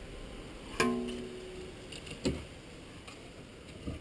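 Metal clink from the rear brake caliper being worked off the disc: a sharp knock about a second in that rings briefly, then a second fainter knock.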